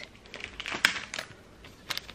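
Plastic retail packaging handled in the hands: a few sharp clicks and crinkles, the sharpest just under a second in and another near the end.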